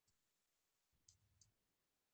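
Near silence, with three very faint short clicks.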